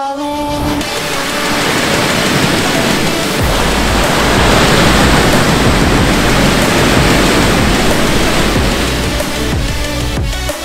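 Waves breaking and washing over a rocky shore, an even rush of surf that swells toward the middle. Electronic music plays underneath, with a steady low bass note entering about a third of the way in.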